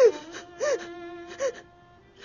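A young woman whimpering through tears: three short, breathy sobbing cries about three-quarters of a second apart, each rising and falling in pitch, the first the loudest.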